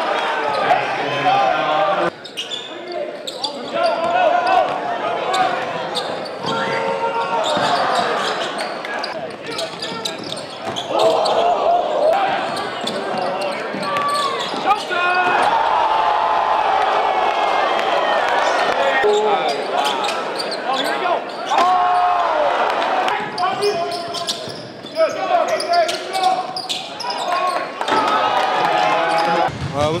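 Live game sound in a gym: a basketball dribbling on the hardwood court amid the indistinct voices and shouts of players and spectators, echoing in the hall.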